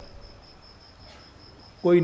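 A high, thin chirping of insect kind, pulsing evenly about six times a second, faint under a pause in a man's speech; his voice resumes near the end.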